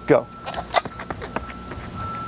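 A sprinter pushes off the starting blocks and runs away on a synthetic track: a quick string of sharp footfalls, about three or four a second.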